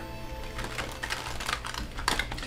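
Deck of tarot cards being riffle-shuffled by hand: a rapid run of soft clicks as the two halves flick together.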